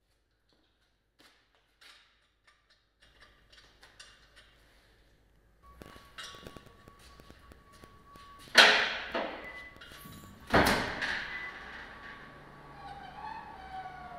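Two loud thunks with a ringing tail, about two seconds apart, past the middle, over a faint steady hum that begins about halfway in after near silence.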